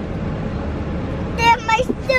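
Steady low rumble inside a car cabin, with a brief high-pitched child's vocalization about one and a half seconds in.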